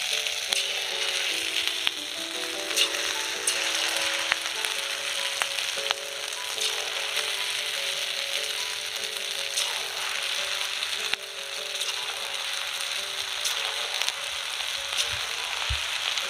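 Strips of rice-and-gram-flour batter frying in hot oil in a kadai, the oil sizzling and bubbling steadily as more batter is piped in.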